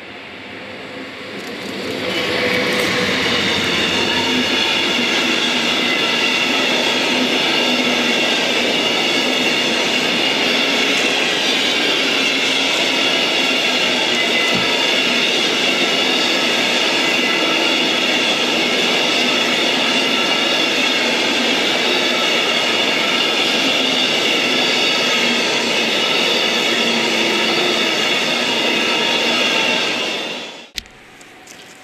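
A freight train of empty container flat wagons, hauled by an ÖBB electric locomotive, passes close by at speed. The rolling noise swells over the first couple of seconds and then stays loud and steady, with a continuous high-pitched ringing from the wheels on the rails.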